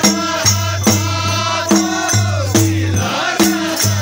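A dhol barrel drum beaten with a stick about twice a second, keeping a steady rhythm under a group of voices singing a Kumaoni Holi song.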